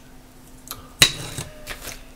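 A sharp plastic clack about a second in, with a brief rattle after it and a smaller knock near the end: a small LED display module being set down on a plastic breadboard.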